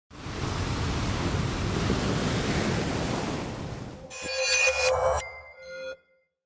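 Intro sting: a rushing, surf-like noise for about four seconds, followed by a short burst of bright electronic chime tones over a held note that cuts off just before the end.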